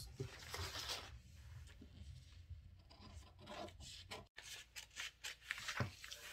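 Scissors cutting a paper pattern while the paper is handled on the table: quiet rustling and sliding of paper with scattered light clicks from the blades.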